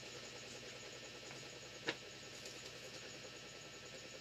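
Quiet room tone with a steady faint hiss, broken by a single short click about two seconds in.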